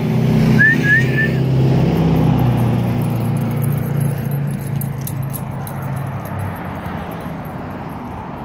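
A motor vehicle's engine running close by, loudest at first and fading away over several seconds as it moves off. Three short high chirps come about a second in, with faint light clicking through the middle.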